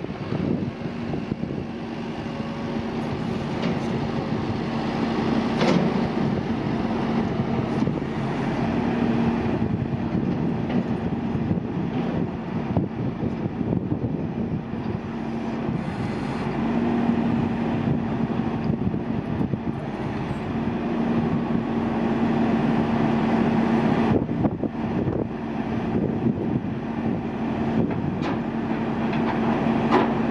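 Diesel engine of a 70-ton rotator wrecker running steadily with a constant low hum while its boom crane is in use.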